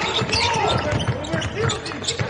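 Basketball being dribbled on a hardwood court: a series of sharp bounces, with voices in the arena behind them.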